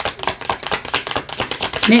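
A deck of tarot cards being shuffled by hand: a rapid, continuous run of light clicks and slaps as the cards are mixed.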